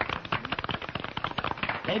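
Small group of people applauding: quick, uneven hand claps in a dense patter.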